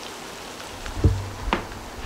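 Steady sizzling hiss from freshly broiled, barbecue-sauced baby back ribs in a foil pan, with two soft knocks about a second and a second and a half in.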